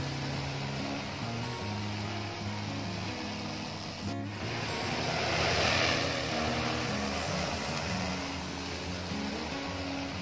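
Background music with a stepping bass line over the steady rushing whir of an agricultural spray drone's rotors, which swells around the middle.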